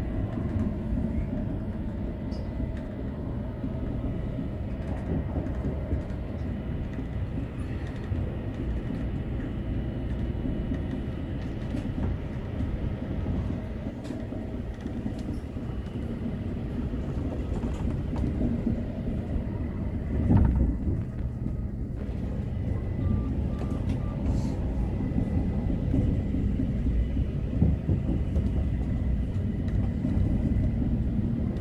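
Electric train running, heard from inside the driver's cab: a steady low rumble of wheels on rail and running gear, with a brief louder rumble about twenty seconds in.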